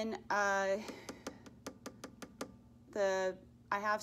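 A woman's voice speaking in two short spurts, likely calling out the strum directions, with a quick run of about ten light clicks between them.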